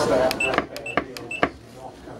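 Keypad of a Nippy 3+ non-invasive ventilator being pressed repeatedly, each press giving a short, high beep with a click. The presses come several a second as the pressure settings are stepped with the plus and minus buttons.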